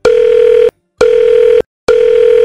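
Telephone line-tone sound effect: three long, loud, steady buzzy beeps, each about two-thirds of a second, separated by short gaps.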